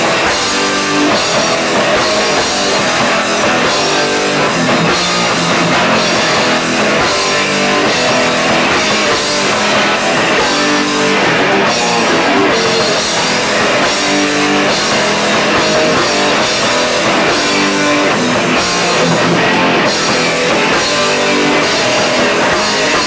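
New Jersey hardcore band playing a song live and loud: electric guitar, bass and drum kit.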